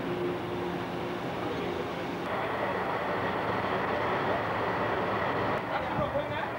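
Steady rumble and rushing noise of a ship underway, with a faint low engine hum. About two seconds in, the rushing grows louder and brighter.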